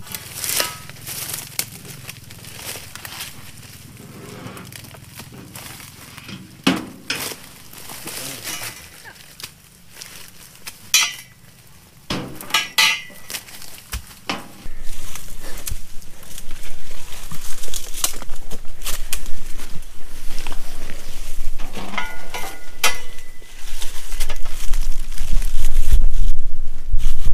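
Irregular chopping strikes and clinks of a steel dodos chisel on a pole cutting into oil palm frond stalks. About halfway in, a loud low rumble on the microphone sets in and stays.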